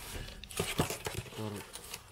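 A cardboard box and packaged sweets rustling and crinkling as they are handled and pushed into the box, with a couple of light knocks a little past half a second in.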